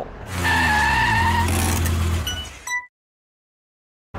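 Car sound effect of a logo sting: a steady engine-like hum with a higher whine for about two and a half seconds. It ends in a few short clicks, then cuts to dead silence.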